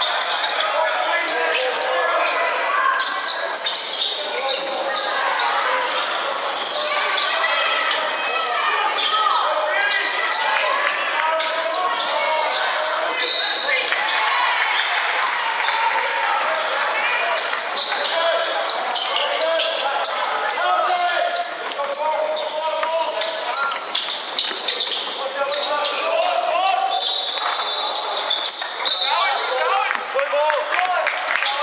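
Indoor basketball game: a basketball bouncing on a wooden court among indistinct shouting from players and spectators, echoing in a large hall. A referee's whistle sounds near the end.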